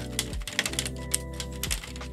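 Old 3D-printed plastic honeycomb softbox grid being flexed by hand, its loosely joined tiles rattling and crackling in quick, irregular clicks: the sign of a flimsy grid that does not hold together as one piece.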